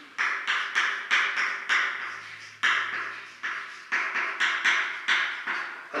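Chalk writing on a blackboard: a quick series of sharp taps and short scratches as the chalk strokes the board, about two a second.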